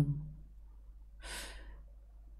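One short breath close to the microphone, about a second in, lasting about half a second.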